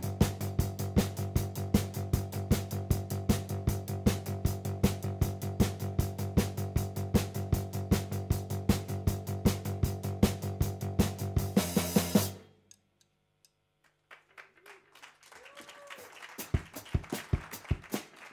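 Live band music: a drum kit keeps a steady, fast driving beat over sustained low keyboard and bass drones. The song stops abruptly about twelve seconds in. Then it is quiet apart from a few scattered drum taps and faint stage noise.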